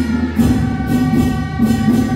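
Taiwanese temple-procession drum-and-cymbal music (da gu zhen) accompanying a deity-puppet dance. Crashing strikes come about twice a second over a held melodic line.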